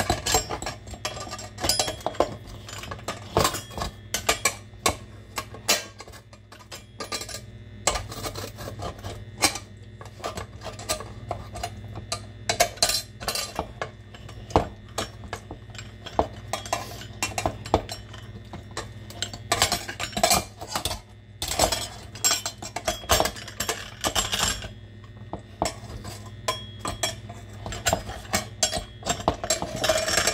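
Hand-cranked stainless-steel food mill grinding cherry tomatoes through its perforated disc, its blade pressed and worked back and forth. It makes a continual irregular run of metallic scraping, clicking and clinking against the metal mill and bowl.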